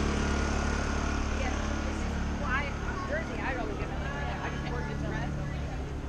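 Two Honda portable inverter generators running together, linked to power a food truck: a steady low hum that slowly grows fainter.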